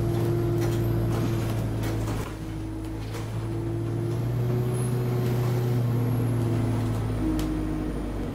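Alexander Dennis Enviro200 bus's diesel engine running with a steady low hum, heard from inside the passenger saloon, with a few faint rattles and clicks.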